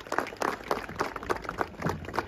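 An audience applauding: many irregular hand claps.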